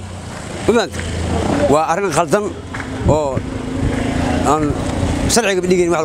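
A man speaking in short phrases over a motor vehicle engine running in the street, whose steady hum stands out a little after the middle.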